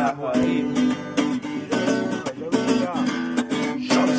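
Acoustic guitar strummed in a steady rhythm of repeated chord strokes.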